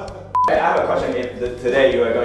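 A short single electronic beep, one steady tone lasting about a tenth of a second, cutting in sharply a third of a second in, followed by people's voices.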